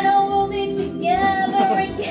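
A woman singing karaoke into a handheld microphone over backing music, holding two long notes, one at the start and another from about a second in.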